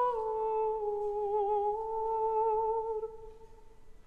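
Baroque opera singing: a single high voice holds long notes with vibrato, stepping down in pitch with little accompaniment, then fades out near the end.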